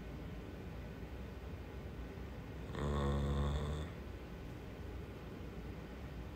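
A man's low, drawn-out "mmm" hum lasting about a second near the middle, over faint steady room noise.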